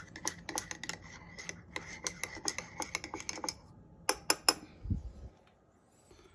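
A spoon stirring coffee in a mug, clinking against the sides several times a second. About four seconds in come three sharper clinks, then a soft low thump.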